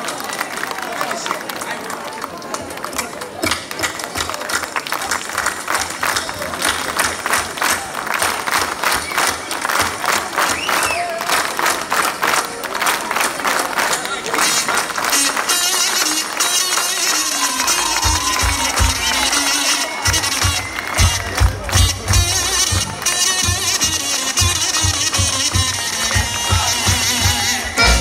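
Live band music with rhythmic hand clapping along in the first half; about two-thirds of the way through, a heavy bass drum beat comes in under the melody.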